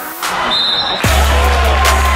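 Background music track; a deep, sustained bass with drum hits comes in about a second in.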